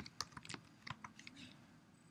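Faint computer keyboard keystrokes, a quick run of clicks as a web address is typed, thinning out and stopping after about a second and a half.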